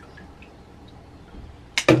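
Faint room noise, then near the end a sharp double clack: a plastic shampoo bottle set down on the stainless-steel sink ledge.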